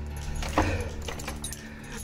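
Keys jangling and a few short metallic clicks as a door's lock is worked and the door is opened.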